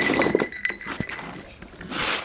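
Small metal jingle bells on a plastic toy ride-on car jingling and clinking as a puppy jostles the car, with a few sharp plastic knocks. The sound is loudest in the first half second and dies down after.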